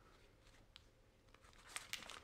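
Near silence: faint handling of duct tape fabric as it is pressed and smoothed, with a couple of small clicks, one about a second in and one near the end.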